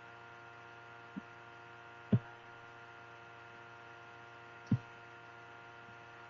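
Steady electrical hum with several fixed tones under it, broken by two sharp mouse clicks, about two seconds in and again near five seconds, with a fainter click just over a second in. The two clicks switch two notification toggles off.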